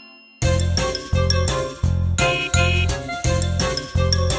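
Instrumental break of a children's song: repeated chords over a bass line, struck about twice a second, starting after a short pause about half a second in.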